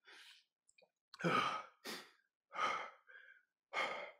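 A man breathing hard with several heavy breaths in a row, about one a second: he is out of breath from high-intensity bodyweight exercise.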